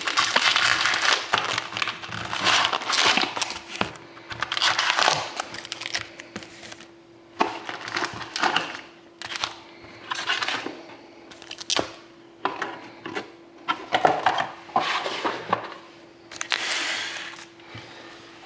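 Upper Deck Series 1 hockey card packs in shiny wrappers crinkling and rustling in irregular bursts as they are pulled from the cardboard box and stacked, with sharp clicks and taps as packs are set down on the table.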